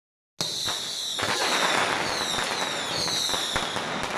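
A string of firecrackers going off: a sudden start about half a second in, then a dense, rapid crackle of bangs. A high whistling tone glides downward several times over the crackle.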